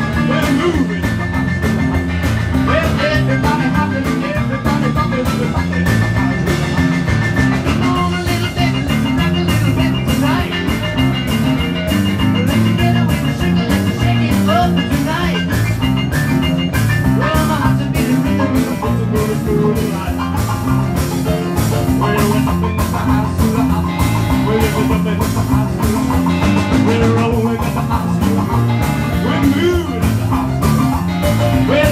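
Live rock'n'roll band playing an instrumental passage with no vocals: electric piano, electric guitar, electric bass and drums keeping a steady driving beat.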